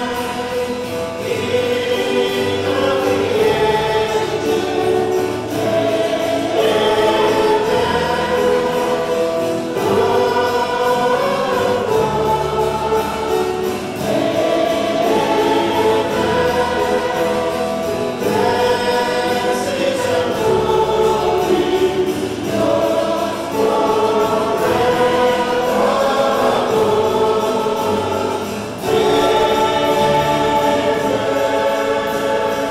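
A church choir singing a hymn in phrases that repeat every few seconds, with sustained low notes beneath.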